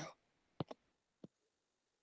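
Near silence broken by faint clicks: two close together a little over half a second in, and one more about a second and a quarter in.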